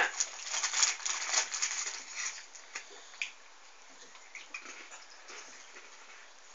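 Crinkly snack packet rustling and crackling as it is handled, densest in the first two seconds or so, then thinning to a few faint crackles.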